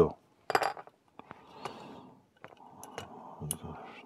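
Small plastic model-kit parts being handled and fitted by hand: scattered light clicks and taps with rustling between them.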